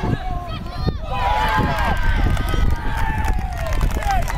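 Several voices shouting and calling out at once, high and rising and falling in pitch, with a short lull about a second in. A steady low rumble of wind on the microphone runs underneath.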